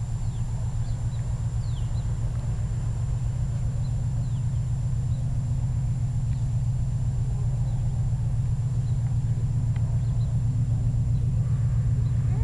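Low, steady diesel rumble of an approaching freight train's locomotives, a GE AC6000CW leading an EMD SD70AC, growing slowly louder as they draw closer. Faint bird chirps sound briefly about a second in.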